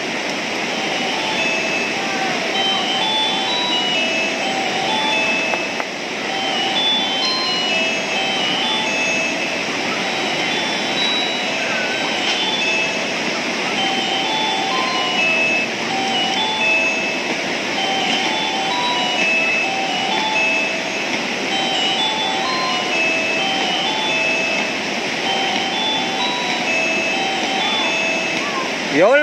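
Steady rush of the Kaveri river's rapids at Hogenakkal Falls, with a simple melody of short clear notes repeating over it.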